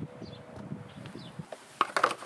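Rustling and handling, then a few sharp knocks near the end as the black plastic final drive cover of a scooter is set against the casing.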